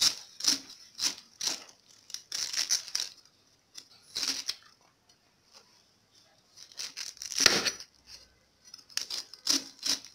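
Kitchen knife cutting the rind off a whole pineapple: irregular short cutting strokes through the tough skin, with a pause of over a second in the middle and the loudest stroke past halfway.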